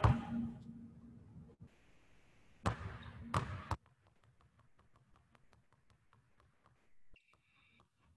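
Basketballs dribbled on a hard court during a crossover ball-handling drill: a few loud bounces in the first four seconds, then a run of fainter, quick, even dribbles. A brief high squeak comes near the end.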